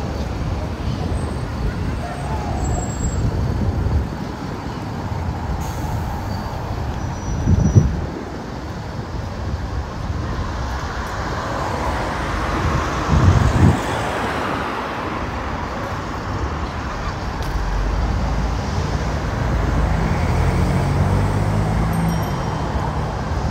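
City road traffic: a steady rumble of cars on the street, with one vehicle passing close about halfway through. There are two short, loud low thumps, one about eight seconds in and one about thirteen seconds in.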